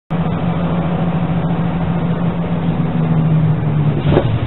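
School bus running at road speed, heard from inside the cabin: a steady low engine and road drone.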